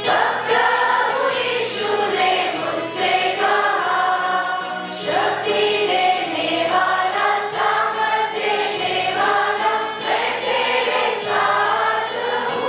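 A children's choir singing a Christian song together, with a steady instrumental accompaniment underneath.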